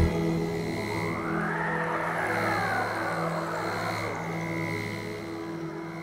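Background music: a sustained ambient drone of steady held tones, with a soft swelling wash that rises and fades between about one and four seconds in.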